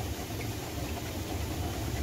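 Wheat-cleaning sieve machine at a chakki flour mill running, its mesh screen shaking as wheat grains trickle down over it. The sound is a steady low mechanical hum.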